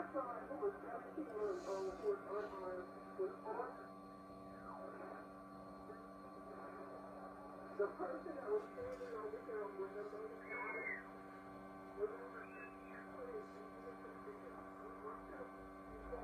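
Faint broadcast speech from an AM station coming through a 1920s Atwater Kent Model 10 three-dial TRF receiver as it is tuned, over several steady background tones.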